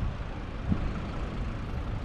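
Steady low rumble of outdoor background noise, with no distinct events standing out.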